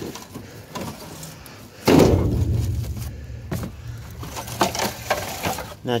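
Junk being moved about inside a metal dumpster: scattered knocks and clatter, with one loud bump about two seconds in that trails off in a low rumble.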